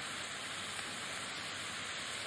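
Steady hiss of background noise in an old lecture recording. It is an even hiss, strongest in the upper range, with no other sound.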